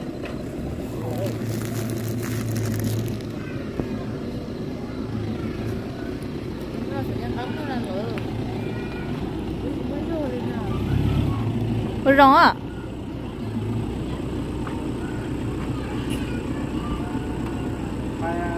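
Pickup truck engine running at idle, a steady low drone with a couple of brief swells, under people talking nearby; a short, loud shout cuts in about twelve seconds in.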